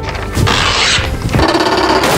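Cartoon sound effect of a gift ribbon being pulled and the wrapping of a giant present coming open: two noisy rushes of about half a second each, over background music.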